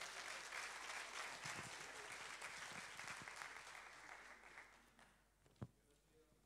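Congregation applauding, the clapping fading away over about five seconds, followed by a single brief knock near the end.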